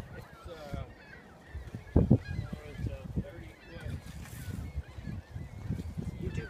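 Geese honking now and then, with a single thump about two seconds in.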